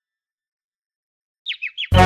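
Silence, then near the end three quick bird chirps, each falling in pitch, for a cartoon bird. A music track starts with a loud beat right after them.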